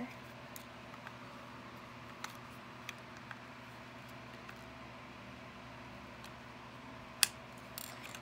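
Small plastic toy parts being handled and pressed together: a few faint clicks and taps over a steady low background hum, then one sharp click near the end as a piece pops into place.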